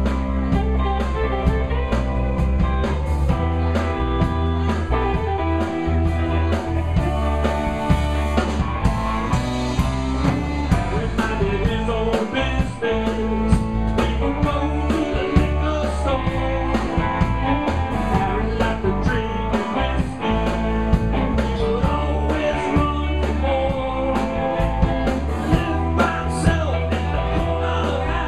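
Live band playing amplified music: electric guitars and bass over a steady beat.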